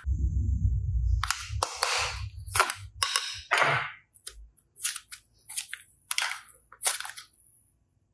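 Hands squeezing and handling a soft rubber bone-shaped squishy toy close to the microphone: a low thudding rumble with noisy crunches over the first few seconds, then a run of short, sharp bursts about every half second.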